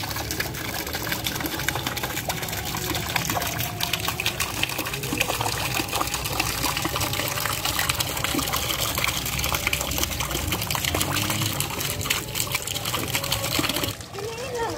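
Water from a small pipe fountain splashing steadily onto the surface of a koi pond, a constant gushing patter.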